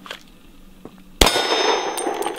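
A single pistol shot about a second in, followed at once by the high, fading ring of the steel plate target it strikes.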